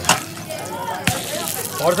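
A thick pancake frying in shallow oil in a heavy black pan, sizzling steadily, with a sharp click of the metal spatula against the pan just after the start and another about a second in.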